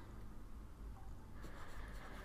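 Faint scratching of a stylus writing on a tablet, a few short strokes that get more frequent after about a second in, over a low steady hum.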